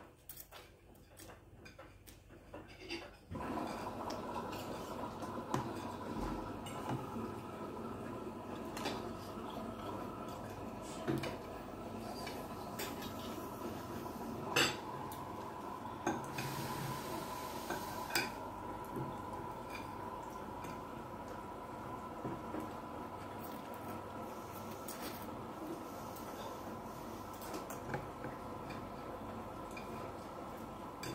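A metal fork and spoon clink and scrape in a plastic tub of noodle soup as noodles are twirled up and slurped. About three seconds in, a steady hum comes on and stays underneath.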